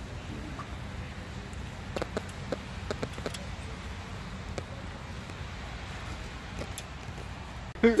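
Faint metal clicks and light scrapes of a small screwdriver working the brush springs and carbon brushes into the brush holders of a VW generator, a cluster of them about two to three and a half seconds in, over a steady low background hum.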